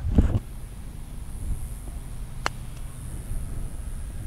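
A single crisp click of a 7-iron striking a golf ball for a low bump-and-run chip, about two and a half seconds in, over a steady low outdoor rumble.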